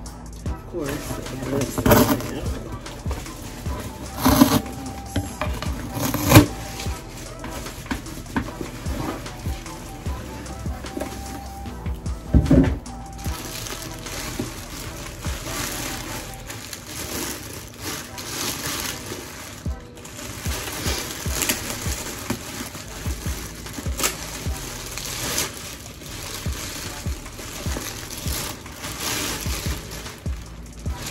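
Cardboard box being handled and opened, with several sharp knocks and scrapes in the first half. Then a clear plastic bag crinkling and rustling as a tote is pulled out of it.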